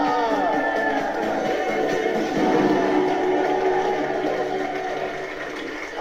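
Game-show music sting playing over a studio audience clapping and cheering for the winners, with a few voices calling out in the first second; it all tapers off near the end.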